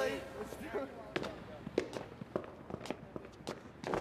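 Footsteps clicking on a hard floor: a string of sharp, uneven steps, about two a second.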